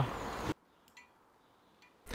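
Near silence: faint room noise cuts off suddenly about half a second in, leaving dead silence with a couple of very faint clicks.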